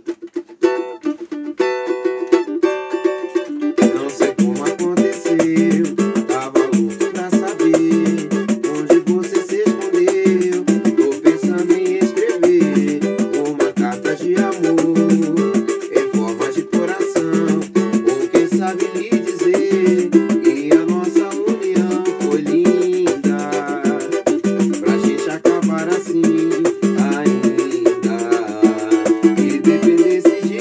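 Cavaquinho and pandeiro playing an instrumental piece live. The cavaquinho strums chords alone at first, and the pandeiro joins about four seconds in with a steady jingling beat.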